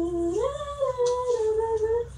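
A voice humming a tune without words in long held notes that slide up and down, with no break.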